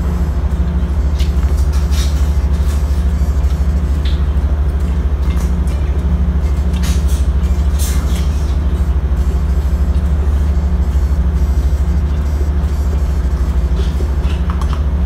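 Ship's engine and machinery running, heard inside a crew cabin as a loud, constant low drone, with faint scattered clicks over it.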